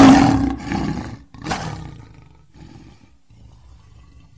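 A lion roaring twice: a loud roar right at the start, a second, shorter one about a second and a half in, then a weaker rumbling tail fading out.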